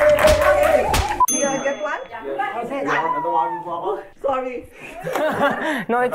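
Scuffling and shouting that cut off abruptly about a second in, replaced by a bright bell-like ding that rings briefly. Voices chatter after it.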